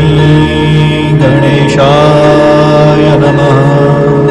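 A voice chanting a Sanskrit Ganesh mantra over a steady low drone. The chanted phrase comes in a little after a second in.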